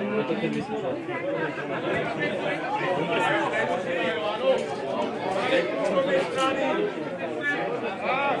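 Several spectators chatting, their voices overlapping throughout.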